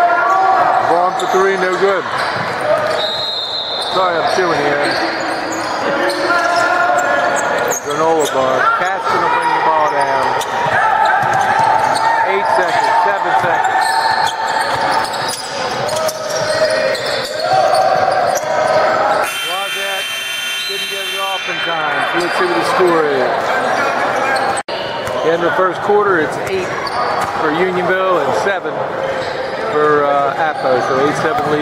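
Basketball game in a large gym: a ball bouncing on the hardwood and players' and spectators' voices calling out, with the hall's echo. About nineteen seconds in, a buzzy horn sounds for about two seconds.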